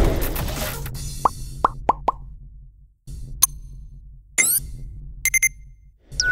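Logo-intro sound effects over a low electronic drone: a loud hit that fades, then a quick run of four short rising plops about a second in. A click follows, then a rising swoosh past the middle and a quick triple click near the end.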